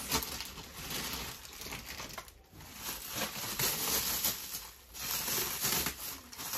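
Clear plastic bag crinkling and rustling as it is handled and pulled off a mannequin head, in uneven bursts with two brief lulls.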